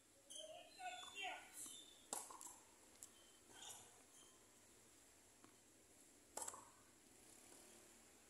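Faint, sparse knocks of a tennis ball on a hard court, struck by a racket or bounced, the clearest about two seconds in and about six and a half seconds in. Faint short chirps in the first second and a half.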